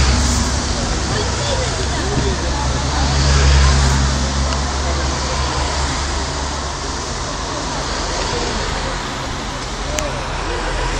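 Cycling race team cars driving past one after another on a wet road: engine noise with a steady hiss of tyres on wet asphalt. It swells loudest right at the start and again about three and a half seconds in.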